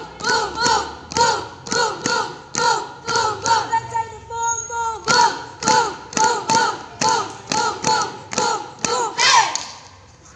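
A group of young women shouting a rhythmic cheer chant (yel-yel) in unison, in short loud shouted syllables at about two to three a second.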